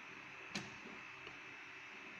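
A single sharp click about half a second in, from a banana-plug patch lead being handled on an electronics trainer panel, over faint room tone.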